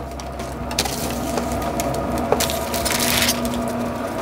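Crumbled sausage and smoked vegetables scraped with metal tongs off a foil-lined sheet pan and sliding into a disposable aluminum foil pan: a rustling scrape with a few light clicks of metal on foil, busiest in the second half, over a steady low hum.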